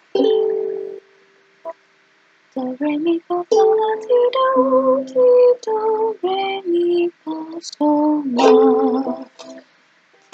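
A short melody being tried out on a ukulele as a channel jingle. One note rings and fades, then after a pause comes a run of short notes stepping up and down in pitch.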